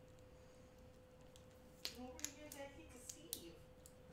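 Near silence: a faint steady hum, a few small sharp clicks from about two seconds in, and a brief faint murmur of a voice.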